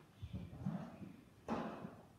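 Objects being handled in a metal bucket: a few soft knocks, then a sharper clank with a short ring about one and a half seconds in, as a round metal item is lifted out.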